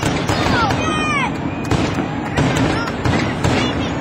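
Aerial fireworks going off in quick succession, a dense run of bangs and crackles with falling whistling sounds among them, and voices mixed in.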